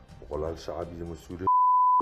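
A single electronic beep, one steady pitch, loud and about half a second long, with all other sound cut out beneath it, coming in near the end right after a man's voice over background music.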